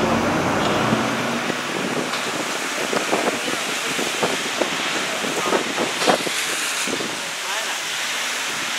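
Steady wind and road noise on board a moving open-top tour bus, with scattered short taps in the middle of the stretch.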